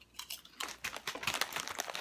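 Lay's potato chips being bitten and chewed by two people: a dense run of crisp crunches.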